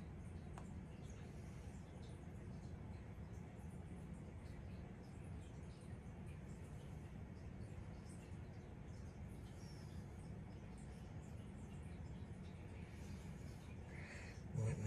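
Quiet room tone: a faint steady low hum with a few faint scattered ticks, and no distinct sound from the paint being poured.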